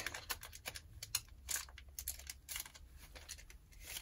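Foil wrapper of a Pokémon EX Dragon booster pack being peeled open slowly and carefully: a faint, irregular run of small crinkles and clicks.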